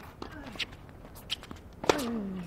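Tennis on a hard court: a few light knocks of ball bounces and shoe steps, then near the end a sharp racket strike on the ball followed at once by a player's grunt falling in pitch.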